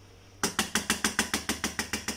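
Stainless steel tray holding a mould of ice cream mixture rapidly knocked against the worktop. The sharp taps start about half a second in and come about seven a second, settling the mixture so the air gaps fill in.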